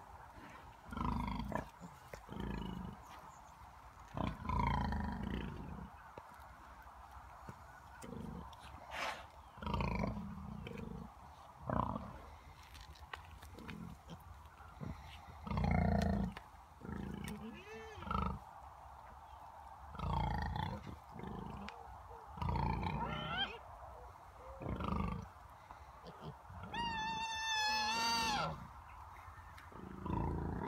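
Domestic pigs and piglets grunting on and off, short deep grunts every one to four seconds, with a higher wavering call near the end.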